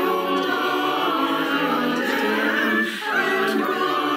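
Mixed virtual church choir of men's and women's voices singing together in full, held chords, with a short break between phrases about three seconds in.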